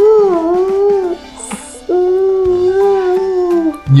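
Two long, drawn-out vocal sounds held on a steady pitch with gentle bends, the second about two seconds long, with a brief soft rustle of a board-book page turning between them.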